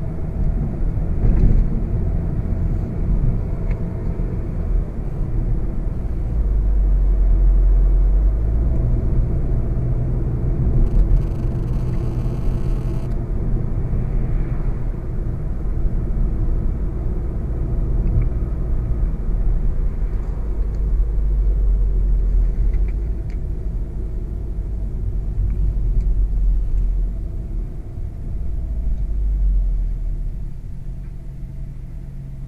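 Cabin sound of a 2016 VW Golf VII GTI Performance's 2.0-litre turbocharged four-cylinder engine pulling steadily at country-road speed, under a deep rumble of tyres and road. The car eases off toward the end.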